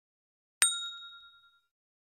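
A single ding sound effect, struck once about half a second in and ringing away over about a second, sounding as the notification bell is selected in an animated subscribe-button graphic.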